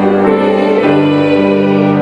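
Piano and organ playing a church hymn in held chords, the chord changing about once a second.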